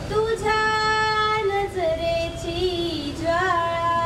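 Girl's voice singing a Marathi song into a microphone, holding long notes with vibrato; the pitch steps down partway through and rises again near the end.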